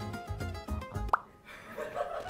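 Background music with a short, quick upward-sweeping 'bloop' sound effect a little over a second in.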